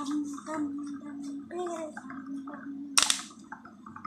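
A woman humming a wordless sing-song tune in long held notes, with one sharp click about three seconds in.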